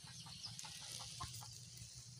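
Faint clucking of chickens: a few short calls over a low steady hum.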